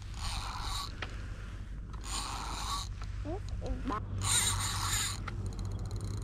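Zebco spincast fishing reel being cranked in three short bursts, each under a second, its gears whirring as line is wound in.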